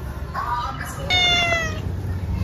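Domestic cat meowing twice: a short call about a third of a second in, then a longer call with slightly falling pitch.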